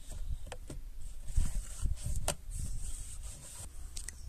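A new pleated cabin air filter being fitted by hand into its housing: its frame rubs and scrapes against the plastic, with a few sharp clicks and taps, the clearest a little past two seconds in.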